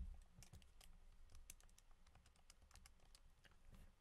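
Faint, irregular clicking of keys being pressed, about five a second, as a multiplication (0.7 times 9.8) is keyed in.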